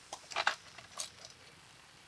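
A few short clicks and scrapes of a metal utensil handled against a cast iron skillet, three or four of them in the first second, then quiet.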